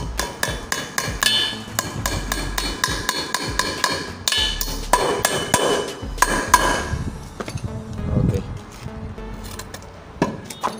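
Claw hammer driving nails through a steel mounting bracket into a wooden post: a quick run of sharp, ringing strikes, about three or four a second, with more strikes after a short pause.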